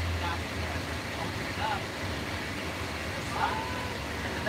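Steady low rumble of a bus engine and road noise heard inside the bus cabin, with faint voices of other passengers now and then.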